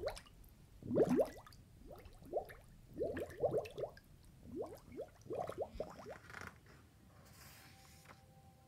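Water dripping and bubbling as a tide-pool sound effect: quick rising bloops of drops and bubbles in clusters, dying away about six and a half seconds in. A faint rustle follows near the end.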